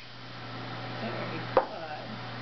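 A single sharp knock on a plastic laundry basket about one and a half seconds in, as the sheltie's paws bump it, with faint scuffing just before, over a steady low hum.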